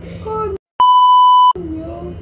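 A loud, steady 1 kHz censor bleep lasting about three-quarters of a second, cutting in abruptly over a woman's speech just after a brief dead-silent gap, about a second in.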